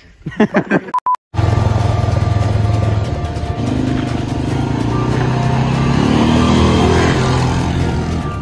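Brief laughter, then after a sudden cut, loud music with a steady bass mixed with the engine of a quad bike (ATV) being driven.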